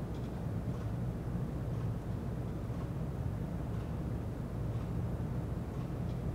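Steady low hum of room background noise, with no sudden sounds.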